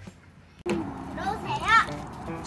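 Young children playing, with a high-pitched child's voice calling out in a rising and falling sing-song about a second in. The sound starts suddenly after a short lull.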